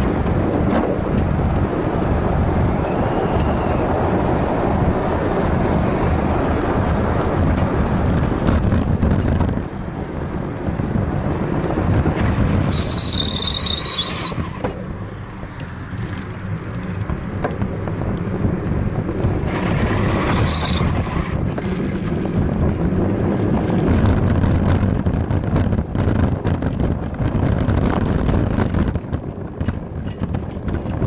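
Bicycle riding with wind buffeting the action camera's microphone over tyre rolling noise. About twelve seconds in, a high wavering brake squeal lasts about two seconds, and a shorter one comes about eight seconds later.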